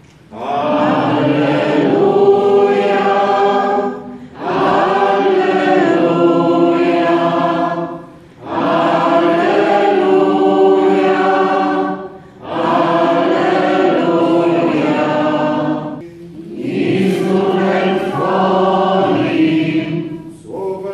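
Congregation singing a liturgical chant in five phrases of about three and a half seconds each, with a short pause for breath between them.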